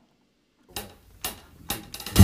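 A few soft taps, about two a second, counting in a song just before the acoustic guitar comes in.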